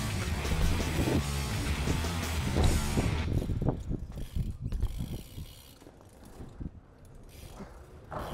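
Background music for about the first three seconds, then it cuts off, leaving the BMX's freewheel rear hub ticking quietly as the bike coasts over concrete.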